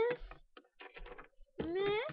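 Meowing: one meow ends just after the start, and a second, drawn-out meow begins about one and a half seconds in and rises in pitch.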